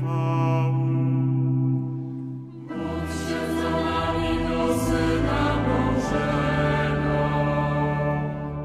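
A choir singing a slow Catholic chant in Polish on long held chords. About a third of the way in, a new phrase starts with deep bass voices, and it is held to the end.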